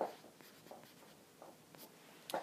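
Stylus writing on a tablet screen: a few short, faint strokes, the strongest right at the start.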